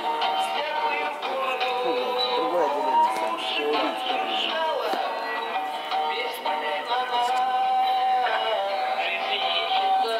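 A recorded chanson-style song: a singing voice over instrumental accompaniment, played back as a lip-sync track.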